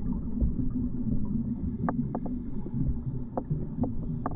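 Muffled underwater sound through a camera housing during a scuba dive: an uneven low rumble of water and the diver's regulator bubbles, with a handful of sharp clicks in the second half.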